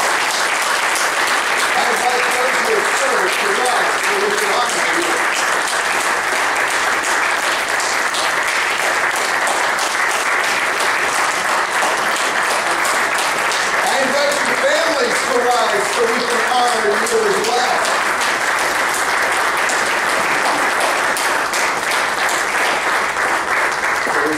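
A congregation applauding, a long, steady round of clapping that fades out near the end, with a few voices calling out in the middle.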